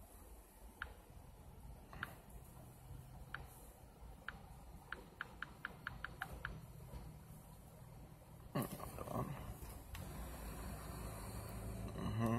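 Faint clicks from a Samsung Galaxy S6 as it is tapped through its menus: a few single clicks, then a quick run of about eight clicks midway, over a low steady hum. A brief rustle of handling comes about eight and a half seconds in.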